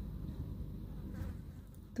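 Faint, steady low hum with no speech over it, dropping a little near the end.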